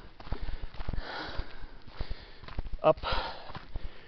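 A hiker breathing hard between phrases while walking uphill, with footsteps on a gravelly dirt road.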